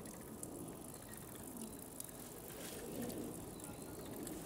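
Faint outdoor background: distant voices murmuring under a steady hiss, with a few soft clicks.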